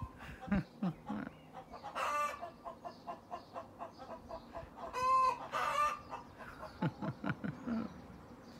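Chickens clucking: two louder drawn-out calls about two and five seconds in, with runs of quick short clucks between them.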